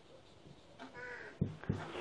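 Marker writing on a whiteboard, with two sharp taps of the marker against the board about a second and a half in, the loudest sounds here. Just before the taps, a short bird call.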